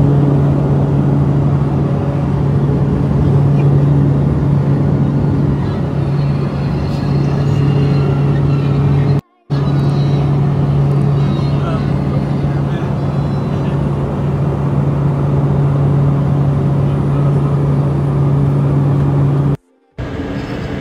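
Steady low engine drone heard inside a small aircraft's cabin, with faint voices under it. It cuts out briefly about nine seconds in and again at the very end.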